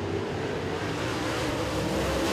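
A pack of dirt-track modified race cars at speed, their V8 engines running hard through a turn as a steady, blended engine noise that rises slightly in pitch near the end.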